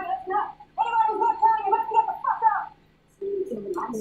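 A woman's voice making drawn-out vocal sounds without clear words, broken by a short pause near the end.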